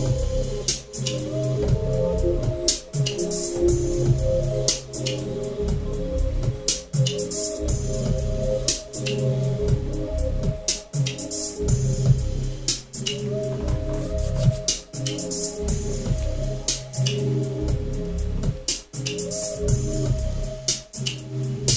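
Home-made electronic beat played live from a pad controller: a steady drum pattern with bass and synth melody lines repeating over it.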